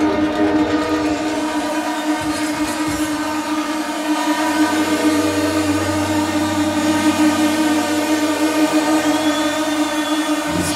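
Electronic music from a techno DJ set: a sustained, steady synth chord with no clear kick-drum beat. A low bass tone comes in about four and a half seconds in.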